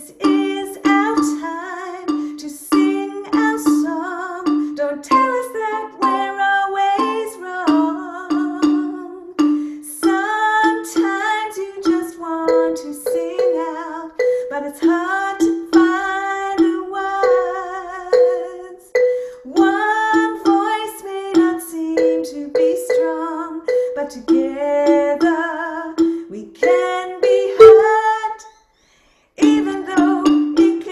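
A wooden xylophone struck with soft mallets, playing a repeated ostinato pattern of low notes, with a woman singing the melody over it. The playing and singing break off briefly about a second and a half before the end.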